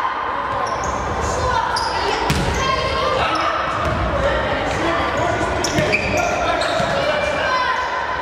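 Futsal ball being kicked and bouncing on a wooden sports-hall floor, a few sharp thuds standing out, under the echoing calls and shouts of children and coaches in a large hall.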